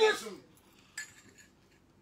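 The end of a spoken phrase, then a single short clink about a second in, like a small hard object such as cutlery or a cup being set down.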